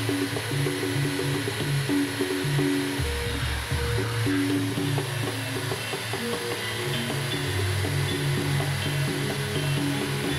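Steady whir of a corded electric drill boring into the top of a plastic water gallon, heard under background music with held, changing notes.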